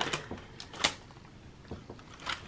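Clear plastic zip pockets in a ring-binder cash budget binder being flipped over by hand: crinkling rustles and a few sharp clicks, the loudest a little under a second in.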